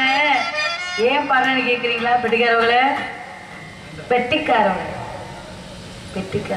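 A singer's voice in a Tamil stage-drama song, amplified over a PA, holding long wavering notes in three phrases; the last and quietest phrase fades out about five seconds in.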